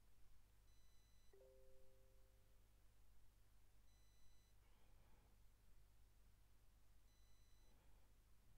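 Near silence: room tone with a low hum and faint, brief electronic beeps about every three seconds.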